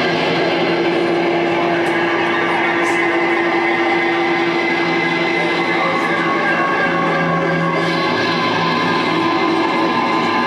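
Live rock band playing loud, a dense wash of sustained electric guitar notes held steady over a droning low end, with no breaks.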